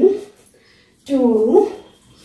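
Speech only: a woman counting dance beats aloud, the end of a drawn-out "one" at the start and a long "two" about a second in.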